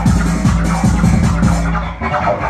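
Loud live techno played on hardware synths and drum machines: a fast, even kick-drum beat over a steady droning bass line, the beat breaking off right at the end.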